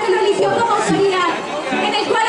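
A woman's voice speaking into a microphone and amplified over a sound system.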